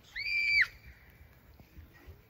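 A child's short, high-pitched squeal, one steady note about half a second long near the start.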